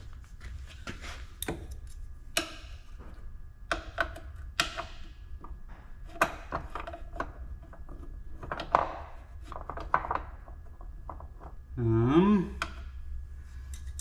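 Hand tools being handled at close range: scattered sharp clicks and knocks over a steady low hum, with a short mumbled voice near the end.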